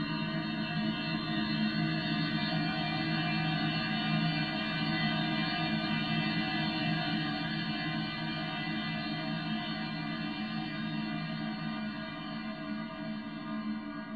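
Electroacoustic music synthesized in SuperCollider: a dense drone of many sustained tones stacked together, getting slightly quieter near the end.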